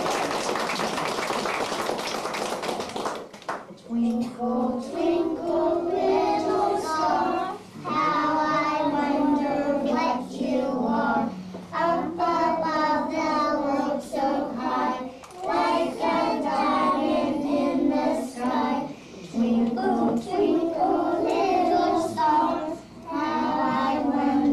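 A group of young children singing together in short phrases with brief breaks between them, after about three seconds of noisy commotion at the start.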